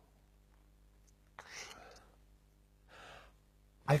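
A man's breathing during a thinking pause: two short breaths about a second and a half apart, the first louder, with faint room hum between.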